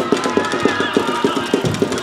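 Children's voices calling and shouting across a football pitch, faint and far off, over a rapid run of dull knocks close to the microphone, several a second.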